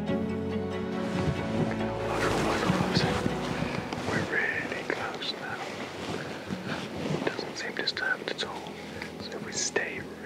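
Background music fading out over the first two seconds, then footsteps and rustling through dry leaf litter and undergrowth, with scattered small crackles and quiet whispering.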